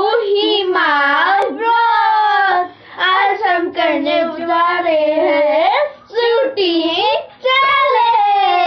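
Children singing a song, with long held and sliding notes in phrases broken by short pauses.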